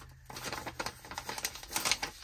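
Paper rustling and crinkling as a paper envelope and paper dollar bills are handled, a quick run of small crisp crackles and ticks that gets busier near the end.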